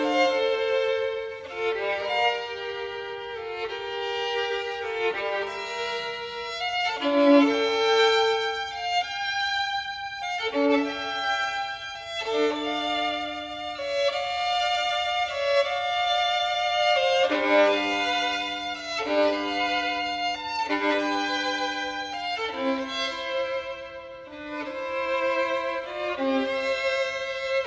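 Unaccompanied violin playing a slow passage of held, bowed notes, often two strings sounding together in double stops.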